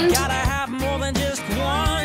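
Background music: a pop song with a singing voice over a repeating bass line.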